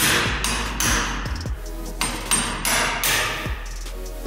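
A hammer strikes a hand impact screwdriver fitted with a Torx T30 bit a few times, giving sharp metallic blows with a short ring, to break loose the screw that holds the brake disc to the front hub. Background music with a steady beat plays underneath.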